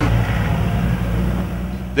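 Armoured vehicle's engine running: a steady low drone that starts abruptly as the street footage begins.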